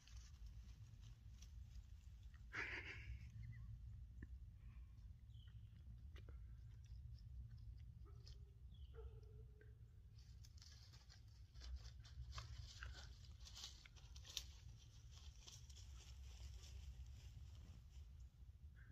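Near silence: a faint low rumble with scattered soft scratches, rustles and clicks from a coyote stepping and nosing about on the bark of a fallen tree trunk close by.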